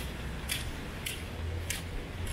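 Footsteps on wet concrete pavement at a steady walking pace, a short crisp slap roughly every half second, about four in all, over a low rumble of wind on the microphone.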